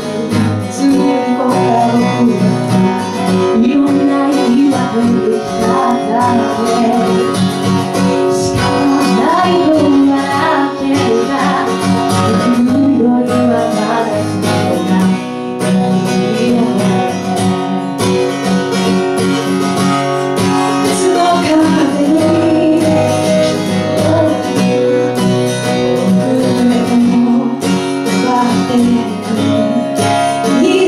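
Live acoustic guitar played with a woman singing lead into a microphone, a continuous song with no pauses.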